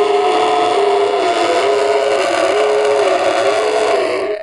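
A person's voice holding one loud, steady droning tone, with a slight wobble in pitch that recurs about once a second.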